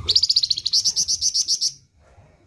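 Flamboyan songbird singing a fast trill of sharp high notes, about ten a second, which stops abruptly near the end.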